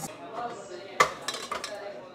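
Metal clanks of a stand mixer's stainless steel bowl and flat beater being handled as the mixer head is raised: one sharp clank about a second in, then several lighter clinks.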